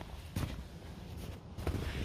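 Footsteps on snow, a couple of separate steps over a low steady rumble.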